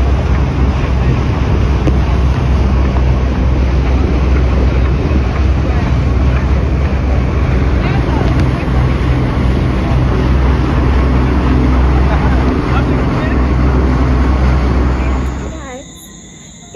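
Loud rush of wind and water on the deck of a moving catamaran, with heavy wind buffeting on the microphone and a low steady drone underneath. It drops away just before the end.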